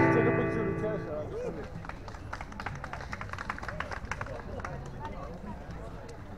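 A keyboard piece ends on a chord struck right at the start, which rings out and fades over about a second. Then come crowd voices with a patter of sharp clicks through the middle seconds.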